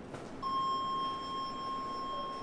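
A single long electronic beep: one steady high tone that starts about half a second in and is held for about two seconds.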